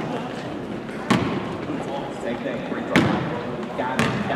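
Basketball bouncing on a hardwood gym floor: two sharp bounces about two seconds apart, over faint background voices in the gym.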